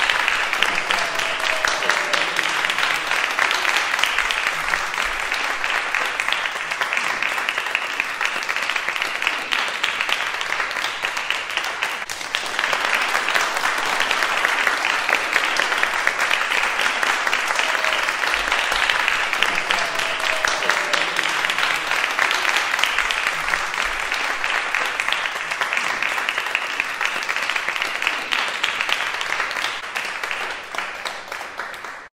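Audience applause: continuous clapping that dips briefly about twelve seconds in and dies away near the end.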